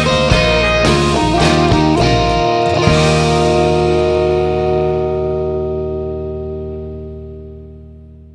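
End of a guitar-led country-rock song: the band plays its last bars, then strikes a final chord about three seconds in that rings on and slowly fades away.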